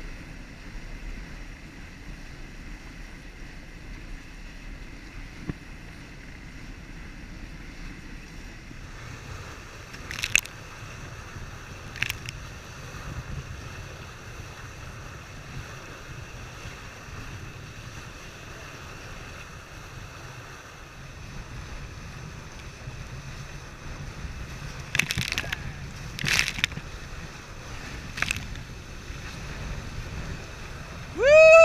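Wind buffeting the microphone and water rushing along the hulls of a Prindle 18-2 catamaran sailing fast, with a handful of sharp splashes of spray, most of them in the second half.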